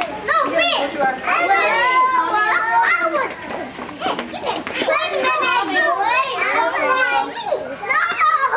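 Several young children's voices chattering and calling out at once, high-pitched and overlapping, with a brief lull near the middle.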